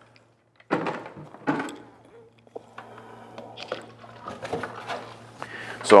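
Light plastic knocks and clicks of white plastic jugs and five-gallon pails being handled as epoxy resin is poured into a pail, over a low steady hum.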